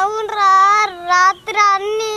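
A young boy crying out in two long, high-pitched, wavering wails, as if in pain.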